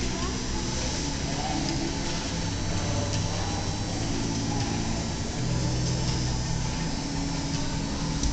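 Steady background noise of an indoor climbing gym: a constant low hum with indistinct voices.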